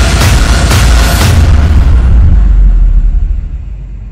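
Horror film score: deep booming hits over a low rumble, three hits about half a second apart, then the rumble fades away near the end.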